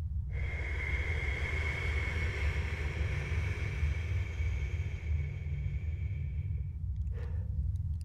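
A person's deep breath, one long slow breath lasting about six seconds, then a short breath near the end, over a low steady hum.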